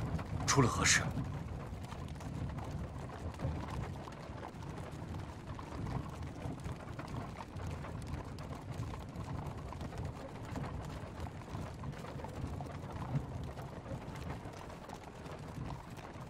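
Low steady rumble with scattered faint clicks and creaks, as of a wooden carriage rolling along, heard from inside the cab. About half a second in, a brief high-pitched cry rises and falls.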